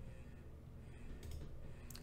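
A few faint, short clicks over quiet room hum, one about a second in and another near the end.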